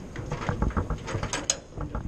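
Irregular mechanical clicking and rattling, with two sharp high ticks about one and a half seconds in.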